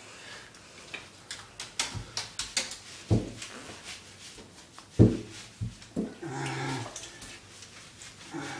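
Small dog being bathed in a tub: water sloshing and short knocks and splashes as it is handled and scrubbed, with two louder thumps about three and five seconds in and a short low vocal sound from the dog about six seconds in.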